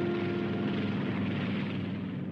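Steady drone of a small propeller plane, an animation sound effect, slowly fading out along with the last faint held notes of a music jingle.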